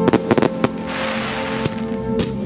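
Aerial firework shells bursting in a quick run of four or five sharp bangs, followed about a second in by a dense crackle of glittering stars lasting under a second. Classical music plays underneath.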